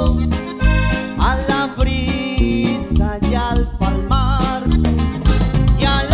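A live norteño band playing: accordion melody over acoustic guitar, electric bass and drums keeping a steady beat, with a man's singing voice at times.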